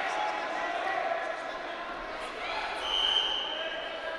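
Referee's whistle blown once, a steady high note lasting about a second, a little past halfway, to restart the wrestling bout. Voices shout in the arena hall throughout.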